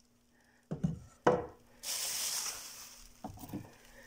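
Wooden-framed canvases knocking together a few times as they are handled, then about a second of crinkly bubble-wrap rustling, followed by a couple of lighter knocks.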